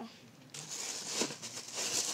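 Thin plastic bag being handled, rustling and crinkling, starting about half a second in.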